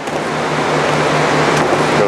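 Forrest Model 480i horizontal bandsaw cutting through a sheet of foam: a loud, steady hiss from the blade in the cut over a low, evenly pulsing machine hum.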